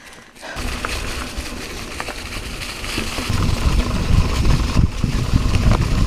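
Mountain bike rolling down a dirt and leaf-covered singletrack: tyre and trail noise with small rattles and knocks, under a low rumble that grows louder about three seconds in.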